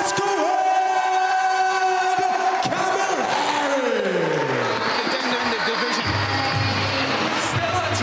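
Music playing loudly with crowd noise behind it. Long held tones give way to a falling sweep in the middle, and a low bass beat comes in about six seconds in.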